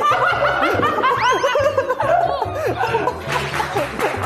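Young men laughing heartily over background music with a steady low beat. About a second in, there is a brief flurry of high, squealing rises and falls.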